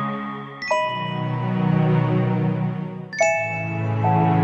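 Slow ambient holding music: bell-like chime notes struck twice, about two and a half seconds apart, each ringing out over a sustained low pad.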